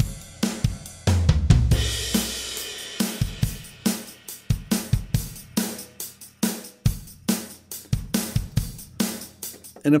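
Drum kit playback from Logic's SoCal kit (kick, snare, hi-hat and cymbals) playing a steady groove through Logic's Compressor. A long cymbal crash over a deep kick comes about a second in.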